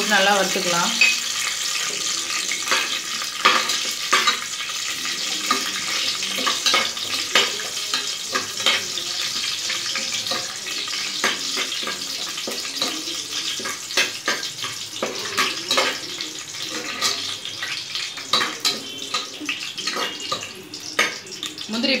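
Cashew nuts and whole spices frying in hot oil in an aluminium pressure cooker: a steady crackling sizzle. Through it come many short clicks and scrapes as a slotted metal spatula stirs against the pan.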